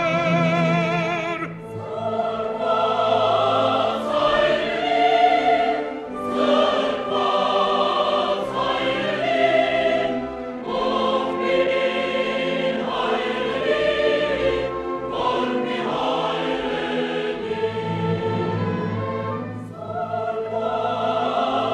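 Choir and symphony orchestra performing, the singing in phrases broken by short pauses. A held note with wide vibrato ends about a second and a half in.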